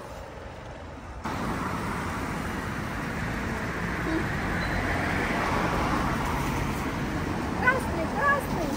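Road traffic on a wet multi-lane street: an even rush of cars and tyres that starts suddenly about a second in and swells around the middle as vehicles pass close by. A brief voice is heard near the end.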